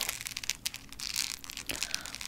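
A bundle of self-defense keychains handled close to the microphone: irregular small clicks of keyrings and plastic pieces knocking together, with soft rustling between them.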